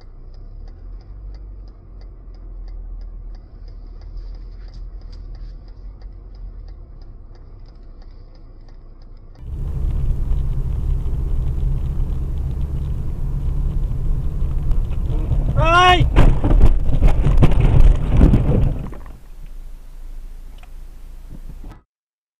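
Dashcam audio from inside a car: low engine and road rumble with a faint regular ticking. A cut at about 9.5 s brings much louder rumble, then a short pitched blare bending in pitch near the middle, followed by about three seconds of loud noise and sharp knocks that ends abruptly, with quieter rumble after.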